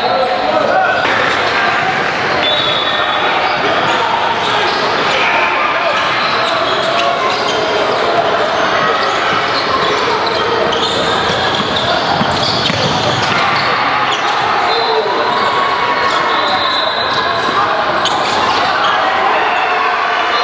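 Basketball game sounds in a large, echoing gym: a ball dribbling on the hardwood court amid a steady background of players' and spectators' voices.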